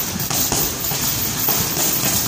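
Gloved punches landing on a hanging heavy bag, a few separate impacts spread through the two seconds.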